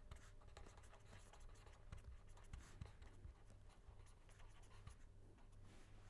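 Faint scratching and small ticks of a pen writing on paper, over a low steady hum.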